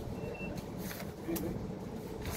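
Steady low background rumble with faint distant voices, and a short high beep a quarter of a second in.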